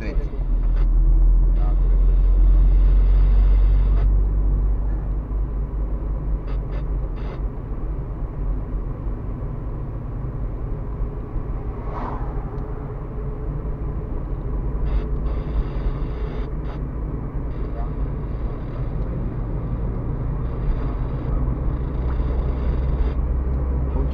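Car driving on a rough rural road, heard from inside the cabin: a steady low rumble of engine and tyres with road noise over it, louder for a few seconds near the start.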